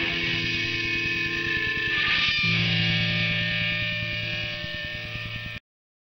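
Distorted electric guitar chords from a hardcore punk tape recording, held and ringing with hum underneath. The chord changes about two and a half seconds in, and the recording cuts off abruptly near the end.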